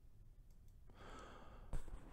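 A faint breath drawn in by a man about a second in, followed by a short click near the end.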